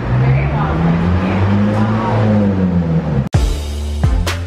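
A motor vehicle's engine drone rising and then falling in pitch over about three seconds, with faint voices, cut off abruptly near the end by music with a beat.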